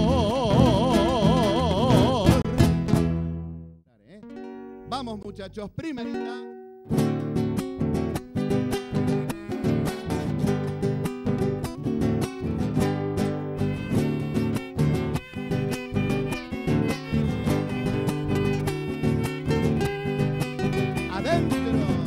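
Argentine folk ensemble of acoustic guitars, violin, bass and bombo legüero drum: a piece ends on a held, wavering note and dies away, a few soft guitar notes follow, and after the spoken cue "adentro" a chacarera starts at about seven seconds, with strummed guitars over steady drum beats.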